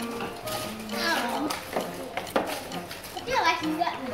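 Children's voices chattering and calling out over each other, with background music and a few small clicks.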